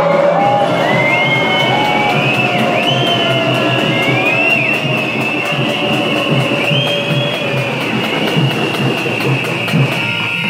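Loud protest din that starts abruptly: whistles glide up and down over a held high tone, with a rhythmic low pulse beneath the crowd noise.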